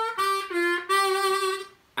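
C diatonic harmonica playing a short lick of quick notes with draw bends pitched as melody notes, one note bending slightly down, ending on a longer held note that fades out just before the end.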